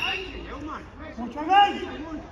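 Men's voices calling out across the pitch, with one short loud shout about one and a half seconds in.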